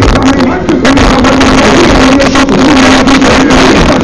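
Loud live band music from a big outdoor concert stage, so loud that the camera microphone overloads and it comes through heavily distorted, with a held, wavering melody line on top.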